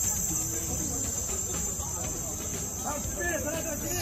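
Faint, overlapping talk from people standing around the car, over a steady high-pitched hiss.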